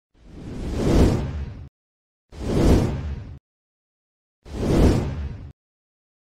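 Three whoosh sound effects from an animated video intro. Each swells over about a second and then cuts off suddenly, with silent gaps between them.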